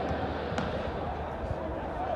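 Footballs being kicked during a pre-match warm-up, heard from the stands as a couple of sharp knocks, about half a second in and again around a second and a half in, over steady open-air stadium ambience with distant voices.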